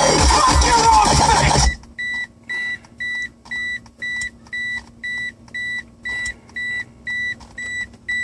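Dubstep music playing through the car stereo and Bazooka 6.5-inch subwoofer stops abruptly about two seconds in. A car's warning chime then beeps steadily, about twice a second.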